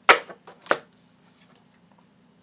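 Tarot cards handled on a tabletop: a sharp card snap right at the start, a softer one after it and another sharp snap under a second in, then faint rustling of cards.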